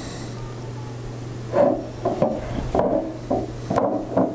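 Glass perfume bottles being moved about and set down on a wooden tabletop. A series of light knocks and scrapes starts about a second and a half in, over a steady low hum.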